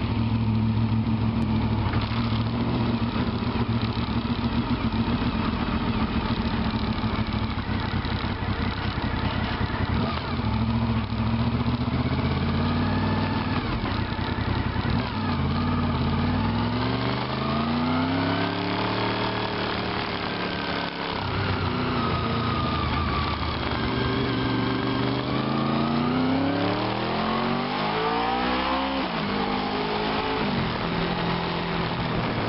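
Honda VFR motorcycle's V4 engine running at low revs, then pulling away and accelerating. In the second half the pitch climbs and drops back twice as it goes up through the gears.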